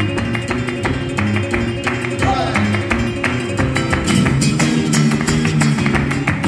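Flamenco guitar playing a tangos, accompanied by several people's palmas, sharp rhythmic hand clapping that keeps the compás.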